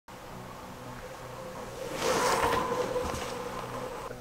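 A bicycle rolling past on a gravel road, its tyre and freewheel noise swelling to a peak about two seconds in and then fading, over a low steady hum.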